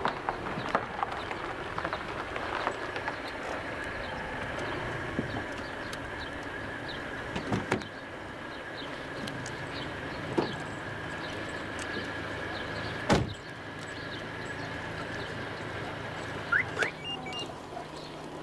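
Citroën Xantia car running at low speed and stopping on a dirt lane, with a steady engine hum. A car door shuts with a sharp knock about thirteen seconds in, among a few lighter clicks.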